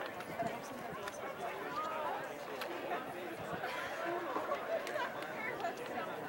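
Background chatter of many voices talking over one another, with no single voice standing out.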